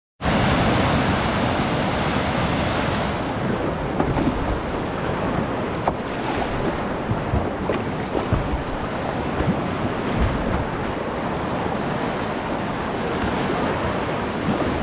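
Steady rush of whitewater river rapids heard from a kayak, with scattered splashes of paddle strokes and wind buffeting the microphone.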